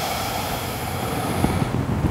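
One long, deep audible breath, close to the microphone, fading out near the end, with some rustling of body and clothing on the mat as she starts to move.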